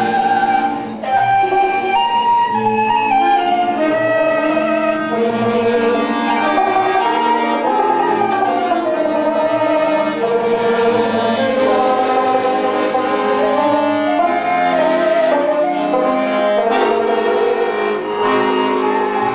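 Small folk band playing a lively Russian folk tune on accordion, banjo, trombone and a wooden flute, the melody running on without a break.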